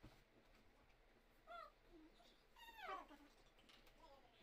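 Faint high-pitched vocal cries over near-silent room tone: a short one about a second and a half in, then a longer one falling in pitch.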